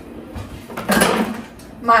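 Metal pots and utensils clattering in a kitchen drawer as an immersion blender is dug out, with a louder clatter about a second in.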